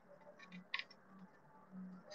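Faint handling noise of hands working cotton macramé cord: a few soft clicks about half a second in and another near the end, over a low hum.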